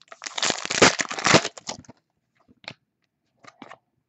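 Foil wrapper of a trading-card pack being torn open and crinkled for about two seconds, followed by a few faint clicks of cards being handled.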